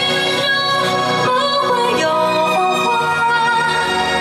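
Live singing into a handheld microphone over instrumental accompaniment: a rehearsal take, heard without pitch correction. The voice glides and holds notes throughout.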